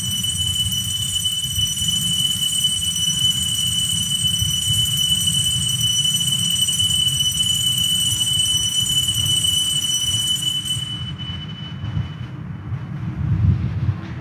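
A consecration bell ringing in one steady, unwavering high tone for about eleven seconds, then stopping, marking the elevation of the host after the words of consecration at Mass.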